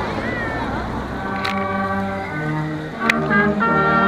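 A brass band starts playing a slow tune in held chords about a second in, over the murmur of an outdoor crowd.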